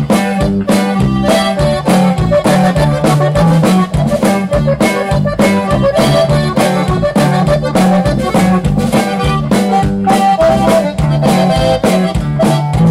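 Conjunto band playing a polka live: button accordion carrying the melody over an electric bass alternating two notes and a fast, steady beat.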